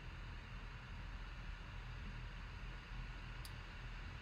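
Faint steady room tone in a small room: an even hiss with a low hum underneath, and one faint click about three and a half seconds in.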